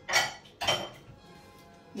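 Glass bowl clinking against other dishes as it is taken out: two sharp clinks about half a second apart, the second ringing on briefly.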